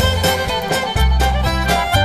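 Instrumental break in a folk ballad between verses: a fiddle playing the tune over a strummed rhythm and a bass line.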